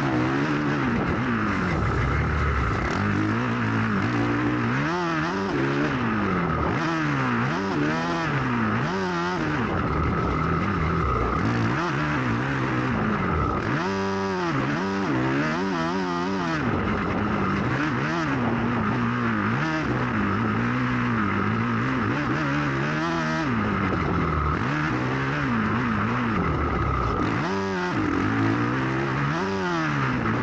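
450cc four-stroke motocross bike heard from onboard at speed, its engine revving up and chopping off over and over, the pitch climbing and falling every second or two as the throttle is worked through jumps and turns.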